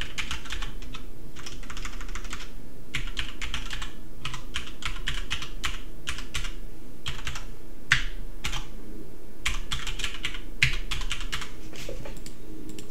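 Typing on a computer keyboard: quick runs of keystrokes separated by short pauses, with a couple of harder key hits in the second half.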